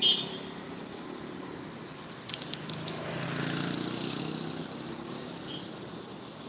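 Roadside traffic: a passing vehicle's engine grows louder and fades, loudest about three to four seconds in. There is a short sharp high sound right at the start and a few quick clicks just after two seconds.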